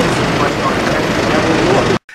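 Steady, loud engine noise from idling emergency vehicles at an accident scene, with people's voices faint beneath it.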